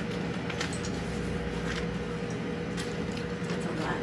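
Steady low mechanical hum with a faint held tone, and a few soft scattered ticks as a stack of paper banknotes is handled.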